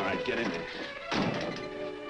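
Tense orchestral film score, cut across about a second in by one sharp thunk of a door slamming shut.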